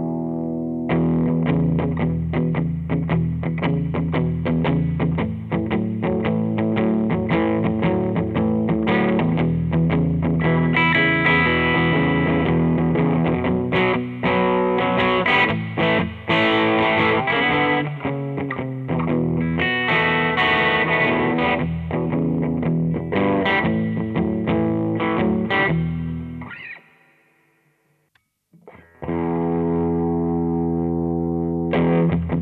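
Ibanez AS-93 semi-hollow electric guitar on its bridge pickup with the tone full up, played blues licks through a Fender Blues Deluxe reissue tube amp. The playing rings out and fades away about 26 seconds in, and after a short silence the Ibanez AM-53 semi-hollow, also on its bridge pickup, starts playing near the end.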